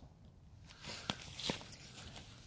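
A few footsteps on grass and dry leaves, soft steps about a second in.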